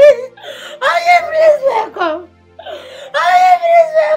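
A woman wailing and sobbing in grief: two long, high cries, each falling in pitch at its end, with short breaks between them.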